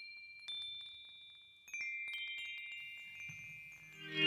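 Chimes struck a few times, several high ringing tones overlapping and slowly dying away, as the quiet opening of a recorded rock track.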